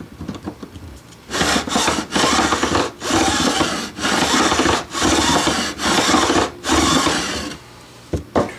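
Fret-end bevel file, a file set at an angle in a wooden block, rasping along the ends of newly installed frets on a Squier guitar neck, beveling them off at the fretboard edge. Starting about a second in, it makes about seven loud strokes, each just under a second long, with short breaks between them.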